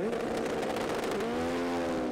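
Two drag-racing motorcycles launching off the start line: the engines, held at high revs, jump in pitch at the hit and then climb steadily as the bikes accelerate away.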